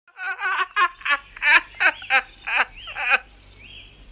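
A quick run of about nine short, high, squawking animal-like calls over the first three seconds, then a faint high thin tone near the end.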